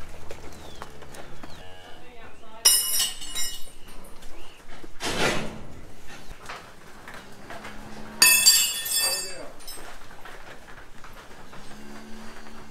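Steel pipe railings and gates of a milking shed clanging with a ringing metallic rattle, twice: about three seconds in and, louder, about eight seconds in, as cows are moved through. A short whooshing noise comes about five seconds in.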